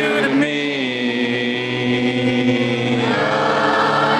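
Live concert music: many voices singing along on a long held note over guitar-backed music, the notes changing about three seconds in.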